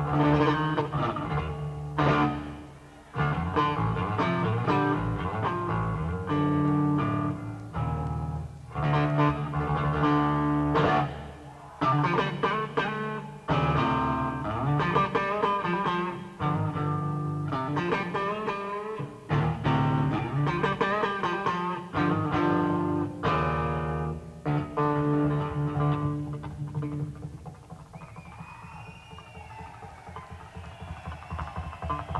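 Unaccompanied electric bass guitar solo played live, in phrases with short breaks between them. Near the end the bass drops away and the crowd whistles.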